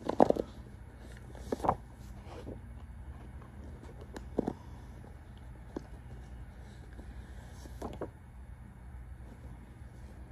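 Tarot cards being handled and laid down: a handful of separate short taps and rustles, the loudest right at the start and another just under two seconds in, over a faint steady low hum.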